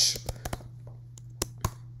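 A few keystrokes on a computer keyboard: about five separate sharp clicks, unevenly spaced, as a short word is typed.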